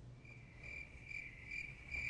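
Cricket chirping, a single high chirp repeated a little over twice a second, most likely the comic 'crickets' sound effect cueing an awkward silence after a joke.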